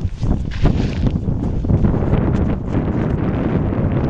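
Wind buffeting the camera microphone with a heavy low rumble, over scattered footsteps on snow-covered river ice.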